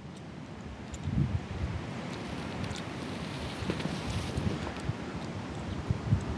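Wind buffeting the microphone in uneven gusts, louder from about a second in, with faint scattered crackles.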